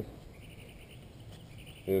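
Quiet outdoor background with a faint, steady, high-pitched chirring of insects; a man's voice starts a word at the very end.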